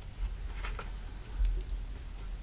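A few faint ticks and rustles of cardstock being handled while a needle draws gold thread through the pre-pierced holes of a stitching-die card panel, the clearest tick about a second and a half in.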